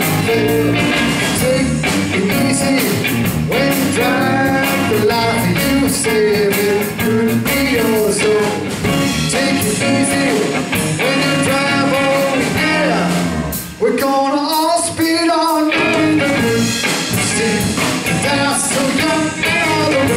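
Live blues-rock band playing an instrumental break: an electric guitar plays bending lead lines over electric bass and a drum kit. About fourteen seconds in, the bass and drums drop out for a couple of seconds, leaving the guitar on its own, then the band comes back in.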